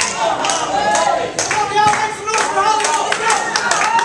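Small audience clapping and shouting.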